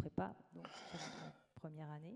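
A woman's voice close on a headset microphone between sentences: a sharp intake of breath about half a second in, then a brief held hesitation sound near the end.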